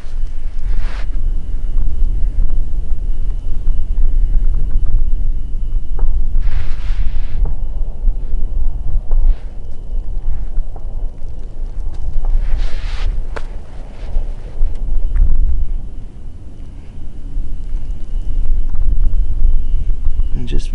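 Wind buffeting the microphone: a loud, uneven low rumble throughout. Two long breathy exhales come through it, about seven seconds in and again near thirteen seconds.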